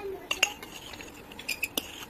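A metal spoon clinking against a drinking glass: two sharp clinks, then three more in quick succession about a second and a half in, each with a short glassy ring.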